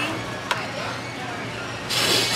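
Restaurant background of music and room noise, with one sharp click about half a second in.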